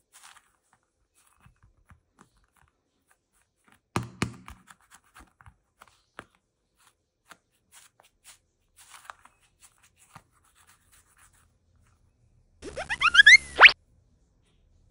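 A foam stress ball squeezed in the hand, giving only faint small crackles and ticks, with a sharper crackling burst about four seconds in. Near the end, a short cartoon-style sound effect rises quickly in pitch, like a boing.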